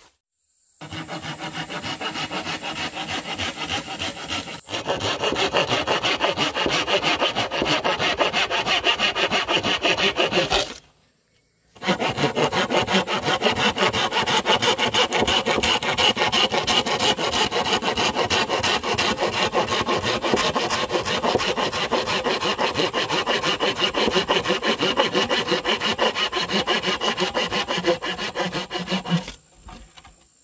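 Hand saw cutting across a thick green bamboo culm, steady back-and-forth strokes. The sawing stops for about a second around a third of the way in, then runs on until shortly before the end, when the culm is cut through.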